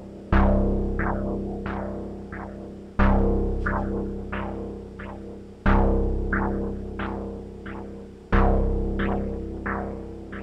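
Erica Synths DB-01 bass synthesizer playing a one-bar sequence through a Strymon Timeline delay set to its Filter engine. A loud bass note sounds about every two and a half seconds, followed by a trail of fading quarter-note echoes whose brightness is swept by the filter's LFO.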